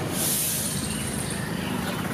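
Street traffic running steadily with a low rumble, and a short, sharp hiss in the first second.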